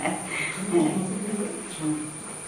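An elderly woman's voice, soft and low, with a steady high-pitched whine running under it.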